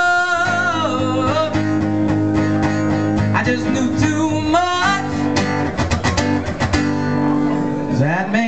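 Live solo performance of a strummed acoustic guitar with a sung vocal line. The singing stops about halfway through, and the guitar carries on alone with a run of sharp strums.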